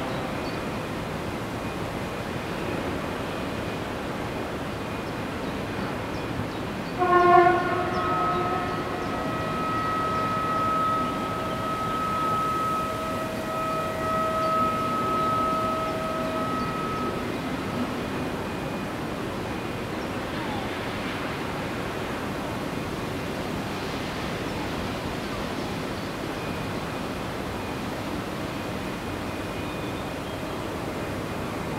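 Distant heavy industrial plant noise: a steady rumble and hiss. About seven seconds in a loud horn-like blast sounds, followed by high steady whining tones that fade out after about ten seconds.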